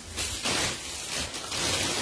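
Rustling and crinkling of bags being handled, an uneven hiss that swells and fades.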